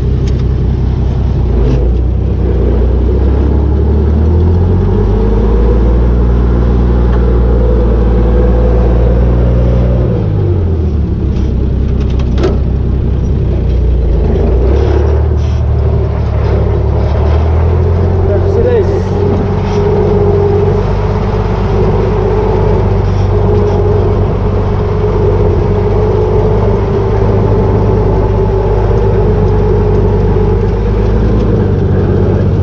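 International Harvester tractor engine running under load, heard from inside the cab as the tractor is driven. The engine speed rises about four seconds in, dips around ten seconds, then picks up again near eighteen seconds and holds steady.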